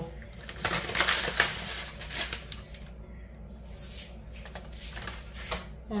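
Dry flax seeds poured from a scoop into a mixing bowl: a rustling, pattering pour with a few knocks of the scoop, busiest in the first two seconds, then quieter handling.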